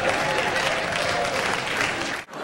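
Studio audience applauding and laughing steadily in response to a joke.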